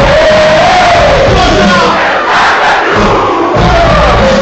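A concert crowd shouting and singing along in unison over a rap track's beat, very loud and heard through a phone's microphone. The bass drops out for about a second past the middle and comes back just before the end.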